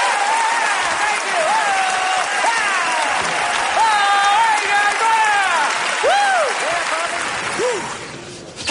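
A studio audience applauds and cheers, with voices whooping up and down in pitch over steady clapping. The sound stays loud and steady, easing off only at the very end.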